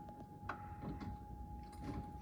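A spanner being picked up and fitted to the steering arm to adjust the tracking: one sharp metallic click about half a second in, then a few faint knocks, over a faint steady high tone.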